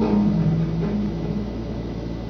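Low electric bass notes through an amplifier ring on for about a second as the song stops, then die away, leaving a steady low amp hum and hiss.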